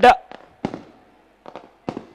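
A man's speech breaks off, then three short, sharp pops come at uneven intervals over the next second and a half, the first and last the loudest.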